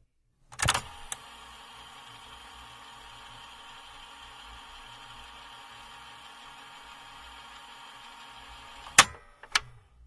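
Faint steady background noise with a light hum, opened by a sharp click about half a second in and closed by two sharp clicks near the end.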